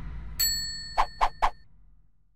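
Logo-animation sound effect: a bright ding that rings for about a second, with three quick pops a quarter second apart as it fades, over the dying tail of a low whoosh.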